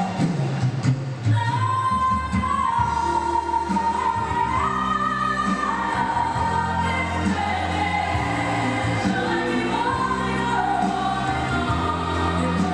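A song with a lead singer holding long, drawn-out notes over a steady backing track. It is played loudly through the venue's sound system for a lip-sync drag number.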